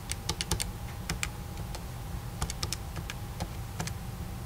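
Rubber-dome keys of a Casio fx-115ES PLUS scientific calculator being pressed: about fifteen short clicks in quick, uneven runs as a formula is keyed in.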